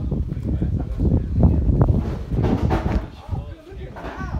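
Indistinct voices talking, over a low rumble.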